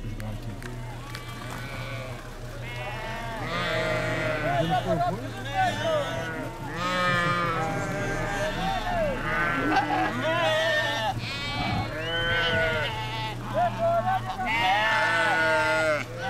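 A large flock of sheep bleating, many overlapping calls that grow denser a few seconds in, over a steady low hum.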